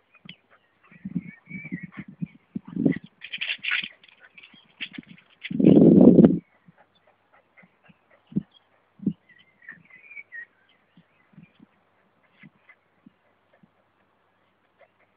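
A dog's scattered small sounds: brief faint whine-like calls and small knocks. One loud, rough, low rush comes about six seconds in.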